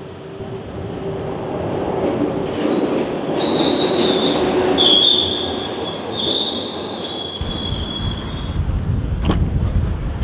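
Glasgow Subway train running along a station platform, its wheels squealing on the rails in high tones over a rising rumble. About seven seconds in, the sound changes suddenly to a low rumble.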